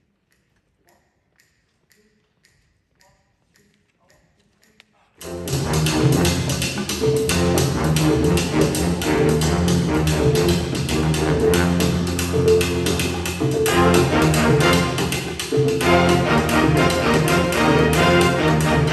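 A few faint, evenly spaced ticks, then about five seconds in a jazz big band comes in all at once: saxophones, piano, bass, congas and drum kit playing a salsa tune over a busy, steady percussion rhythm.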